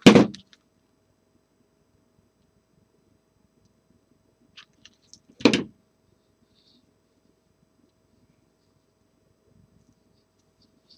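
A single sharp knock about halfway through, a small plastic hot glue gun being set down on the work table, with a few light handling clicks just before it, against quiet room tone.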